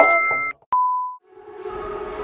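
Edited-in sound effects: a sustained chord cuts off, then a click and a short steady beep about a second in. A sustained droning tone fades in near the end.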